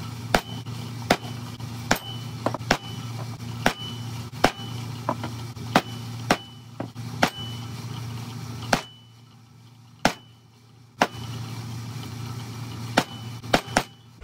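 A hammer strikes steel letter and number stamps to punch marks into a cast fine-silver bar. The blows are sharp metallic taps at about one a second, sometimes two in quick succession, and many leave a brief high ring.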